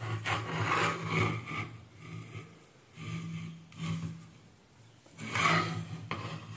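Irregular rubbing and scraping handling noise in three stretches, at the start, around the middle and near the end, over a steady low hum.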